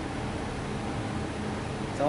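Steady room noise: an even hiss with a low hum, with no distinct event.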